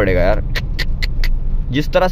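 Steady low road and engine rumble inside the cabin of a Renault Kiger CVT compact SUV cruising on a highway, with a few short ticks in quick succession just after half a second in.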